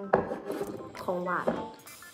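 Metal fork scraping and rubbing on a plate as it cuts into a cookie, with a few sharp clicks.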